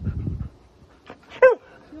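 Husky gives a short, high whine that drops in pitch about one and a half seconds in. A brief low rumble comes at the very start.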